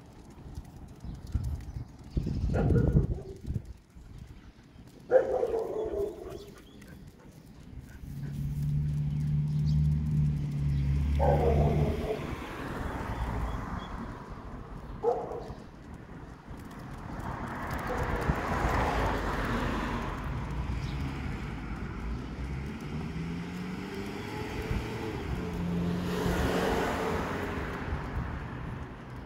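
Dogs giving several short pitched vocal calls, a few seconds apart in the first half, while vehicles pass along the street with a low engine hum and swells of road noise.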